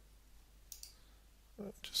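Two quick, light computer mouse clicks, close together, about two-thirds of a second in.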